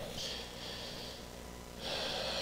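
A man breathing into a close microphone: a hissing breath just after the start, then a second breath drawn in just before he starts speaking again.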